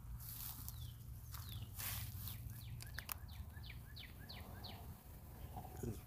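A small songbird calling: a couple of short notes that slide down in pitch, then a quick run of about six such chirps, roughly three a second, starting about three seconds in. A few faint clicks, likely footsteps on wood-chip mulch, come through underneath.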